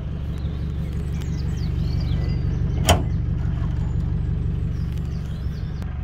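Minibus engine idling steadily, with a single sharp click about three seconds in, as the rear door is unlatched and opened.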